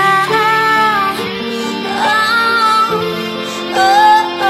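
A woman singing a slow song to piano accompaniment, holding long notes over sustained chords, with a louder phrase rising near the end.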